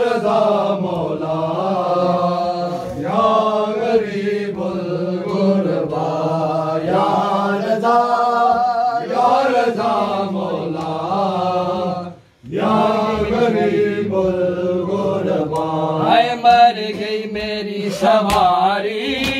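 Men's voices chanting a noha, a Muharram lament, in a slow sung melody. The chant breaks off briefly about twelve seconds in, then resumes.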